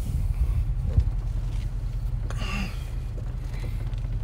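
Low, steady rumble of a Land Rover SUV crawling downhill in low-range first gear on engine braking, heard from inside the cabin, with a single knock about a second in.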